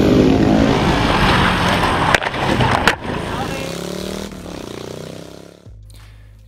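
Several flat-track racing motorcycles running on a dirt oval, their engine notes falling in pitch as they go by and fading over the next few seconds. Near the end it cuts to a low steady drone inside a car's cabin.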